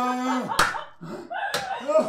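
An actor's voice holding one long steady note that breaks off about half a second in, then a sharp slap, then more wordless vocal sounds with a second sharp click near the end.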